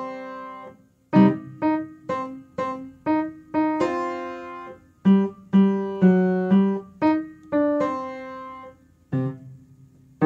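Piano played with both hands: a simple jazz-style tune of short, separately struck chords following one another at a moderate pace. There is a brief pause about a second in and another near the end.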